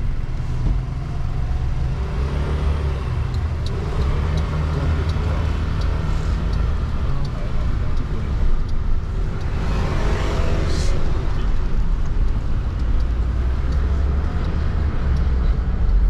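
Steady low rumble of a car's engine and road noise, heard inside the cabin while driving. About ten seconds in, a whoosh swells and fades.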